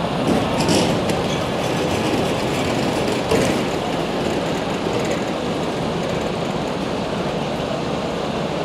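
Large diesel transporter trucks running, a steady rumble with a couple of brief clatters about 1 s and 3 s in.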